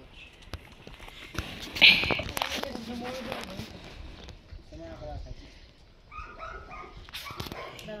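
A dog barks once, sharply, about two seconds in, then gives short high whimpers near six to seven seconds in.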